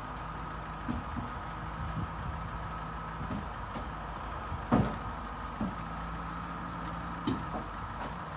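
Flatbed recovery truck's engine idling steadily, with a few short knocks and clunks, the loudest about halfway through.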